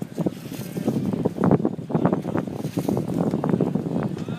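Wind buffeting the microphone in uneven gusts, over the talk of a crowd of spectators.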